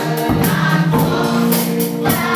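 Gospel song sung by a choir and worship leaders, with sustained sung notes over a steady percussive beat.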